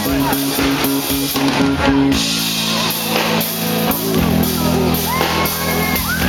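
Live pop-rock band playing through a PA, heard from among the audience: a drum kit keeping a steady beat with cymbals, and guitar and bass holding chords that change about two and four seconds in. A voice sings over it in the second half.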